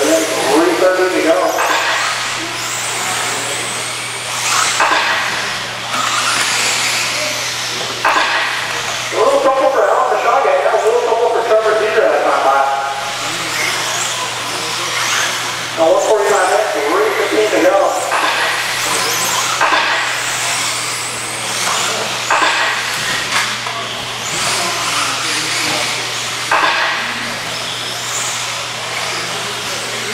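Radio-controlled 4WD buggies racing on an indoor dirt track: a continuous rushing of motors and tyres with a low steady hum underneath, and a race announcer's voice coming and going over it, most strongly a third of the way in and again a little past halfway.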